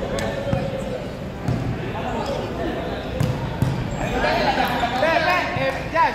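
Futsal ball being kicked and struck on an indoor court, a few sharp knocks scattered over a steady din of play, echoing in a large hall.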